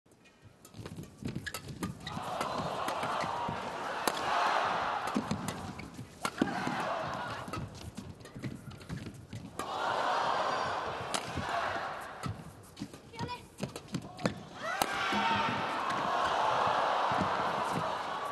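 Badminton doubles rally in a large arena: sharp racket strikes on the shuttlecock and the players' footwork on the court, under a crowd that cheers and shouts in swells rising and falling every few seconds.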